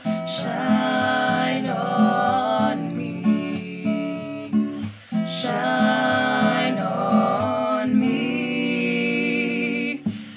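A woman and two men singing in harmony over a strummed acoustic guitar, with a short break in the sound about halfway through.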